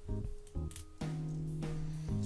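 Disco-lounge background music with held bass notes, and a couple of light clicks of copper pennies being handled in the fingers, near the start and just under a second in.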